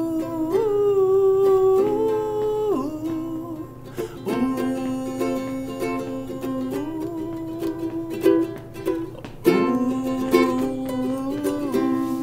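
A man singing a melody on a wordless 'ooh' over a strummed string instrument, in three phrases of long held notes that step up and down.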